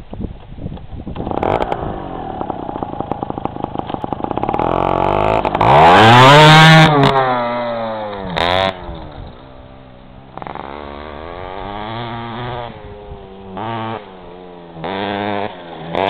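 Small motorcycle engine revving. Its pitch climbs slowly to a loud peak about six or seven seconds in, then falls away, followed by several shorter revs between steadier running.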